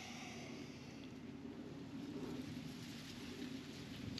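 Faint, steady outdoor background noise with a weak low hum.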